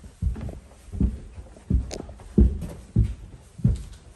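Footsteps climbing carpeted stairs: a regular series of dull thuds, about one every two-thirds of a second.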